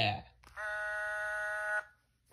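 Talking plush dog toy giving one steady, buzzy electronic beep about a second long, starting about half a second in, as the toy switches off. A short spoken "yeah" comes just before it.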